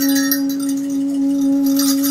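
Live improvised music: an alto saxophone holds one long, steady note, with a light metallic percussion shimmer fading out in the first half-second.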